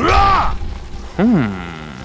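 A cartoon character's wordless vocal sounds: a short arching call right at the start, then a second call that rises and falls in pitch about a second in.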